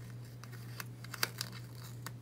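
Paper planner sticker being peeled and handled by fingers: a few small crackles and clicks, the sharpest a little past a second in, over a low steady hum.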